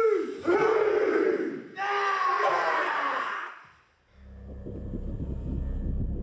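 A group of men chanting a haka in unison, with loud, drawn-out shouted calls. The chanting fades out about three and a half seconds in, and a low, steady musical drone begins.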